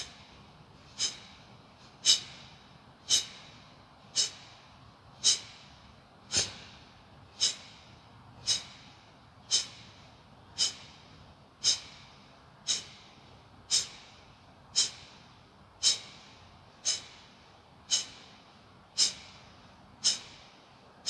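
Yoga breathing exercise: sharp, forceful exhalations through the nose, about one a second in a steady rhythm, each a short puff that fades quickly, as in kapalbhati breathing.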